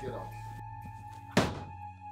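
A door shutting with a single thud about one and a half seconds in, over steady background film music.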